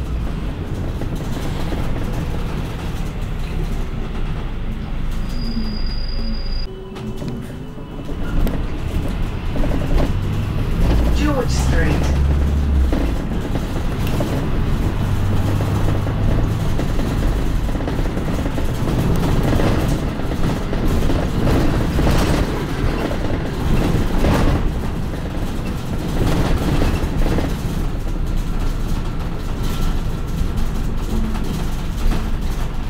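Inside a London double-decker bus on the move: a steady engine and road rumble with rattles. A short high beep sounds about five seconds in.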